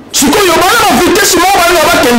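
Speech only: a man talking loudly and animatedly, his words not caught by the recogniser.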